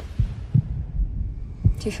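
Heartbeat sound effect: slow, low thumps in lub-dub pairs.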